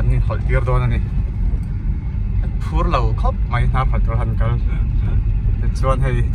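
Steady low rumble of a car's engine and road noise heard from inside the cabin while driving slowly, with a man's voice talking in short bursts over it.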